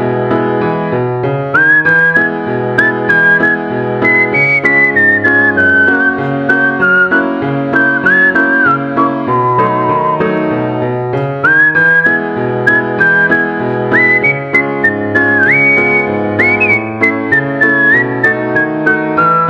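Background music: a whistled melody with sliding notes over piano chords and a bass line, the melody coming in about a second and a half in.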